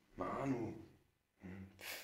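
A man's voice making two wordless sounds: a drawn-out one early on, then a short low hum that ends in a breathy hiss near the end.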